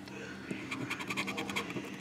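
Scratch-off lottery ticket being scraped with a flat handheld scraper: a run of quick scraping strokes starting about half a second in, rubbing the latex coating off the number spots.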